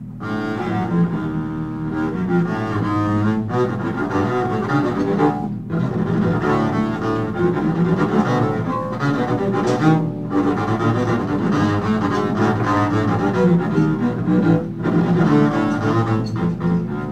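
Free-improvised jazz from a double bass and saxophone duo, played in dense, continuous lines. The lines break off briefly about six, ten and fifteen seconds in.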